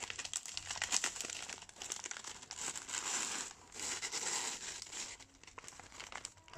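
Foil chip bag crinkling and crackling as it is handled and pulled open by hand, with short lulls along the way.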